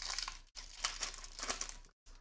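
Panini Prizm Fast Break card-pack wrapper being torn open and crinkled by hand as the cards are pulled out. The crackling is loudest in the first half second.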